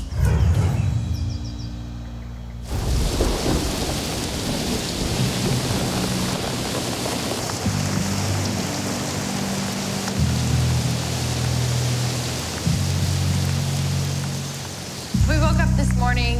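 Heavy rain pouring down steadily, starting abruptly about three seconds in after a deep low rumble at the opening, with a music score underneath.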